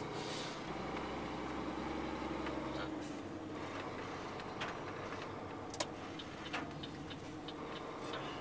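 A snowplough truck running along a snowy road, heard from inside the cab as a steady low engine and road hum, with a few faint, irregular clicks and rattles.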